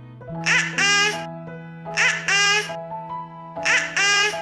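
Background music with held notes, over which a baby laughs three times, about a second and a half apart.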